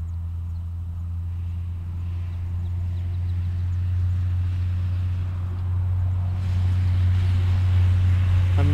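A steady low mechanical hum from a motor or machine, growing gradually louder.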